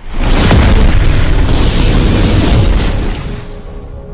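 Sound-effect explosion: a sudden loud boom with a deep rumble that lasts about three seconds and fades out, with music under it.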